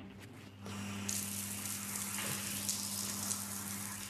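Shower running after its wall mixer is turned on: a steady hiss of water that starts about a second in.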